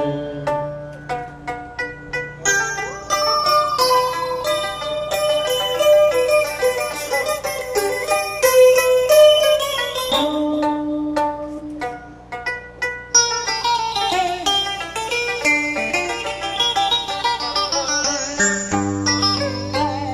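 Instrumental interlude of Vietnamese tân cổ music: a đàn kìm (moon lute) and an electric guitar pluck quick runs of notes with bent pitches over sustained keyboard chords. A long rising sweep climbs through the last third.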